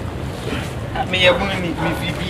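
Steady low rumble of wind noise on the microphone, with a person's voice speaking briefly in the second half.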